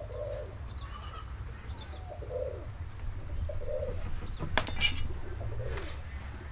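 A dove cooing, soft low coos repeated every second or so. Near the end comes a brief sharp clatter of a steel rule being picked up.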